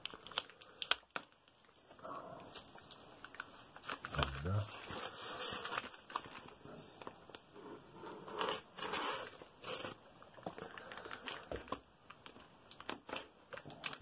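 Scissors cutting open a taped cardboard parcel: irregular snips and scrapes of the blades through cardboard and packing tape as the flap is pulled apart.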